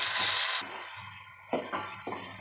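Onions frying in hot oil in an aluminium pot, sizzling, with the sizzle cutting off suddenly about half a second in. About a second later the spatula knocks once against the pot with a short ring.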